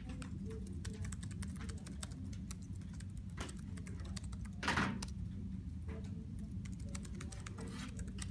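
Typing on laptop keyboards, a steady run of light key clicks over a low room hum, with one louder knock about halfway through.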